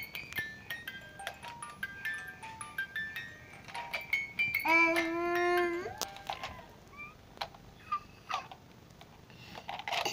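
A simple electronic tune of short beeping notes stepping up and down in pitch, like a baby's musical toy, with a baby's drawn-out vocal squeal about five seconds in and a few handling clicks.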